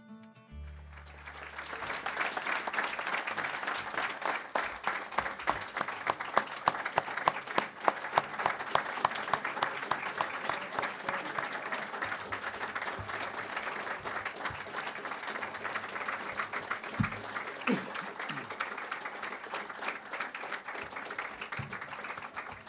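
A room full of people applauding, a sustained clatter of many hands that starts about a second in as the tail of music cuts off and eases slightly near the end.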